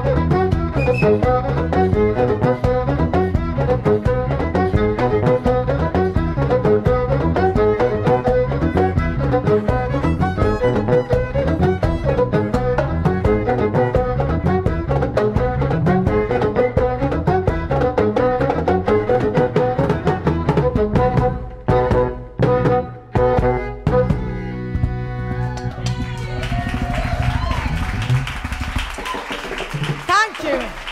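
Ethiopian band of violin, electric krar lyres and drums playing a fast, driving groove with a repeating bass line. About 21 seconds in it breaks into a few sharp stop hits and a held final note, and from about 26 seconds the audience applauds and cheers.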